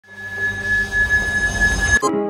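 A woman's long, high-pitched scream, held on one pitch over a low rumble and cut off suddenly at the end.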